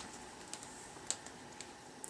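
Faint rustling and a few light clicks as a shiny red costume boot is lifted and handled.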